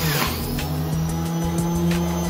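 Electric centrifugal juicer motor running with a steady hum while apple and pear pieces are pressed down its feed chute, the hum dipping briefly near the start as the fruit loads it. Background music plays along.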